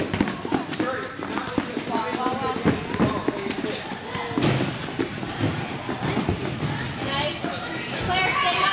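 Children's running footsteps and soccer-ball kicks thudding on indoor turf, many short knocks at uneven intervals, over indistinct voices of players and spectators.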